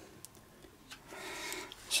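Faint rustling of a flexible adhesive print sheet being handled against a glass print plate, a soft hiss lasting about a second in the second half.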